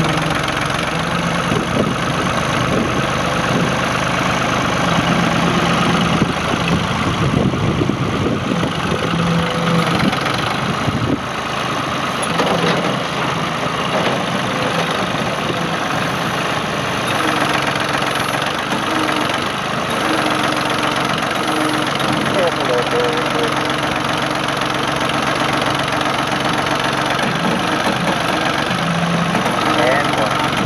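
Ford 445 loader tractor's three-cylinder diesel engine running steadily as the tractor drives about and works its front loader.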